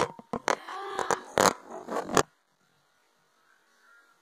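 Loud rubbing, bumping and scraping of a phone camera being handled with fingers against the microphone, a run of irregular knocks that cuts off abruptly about two seconds in.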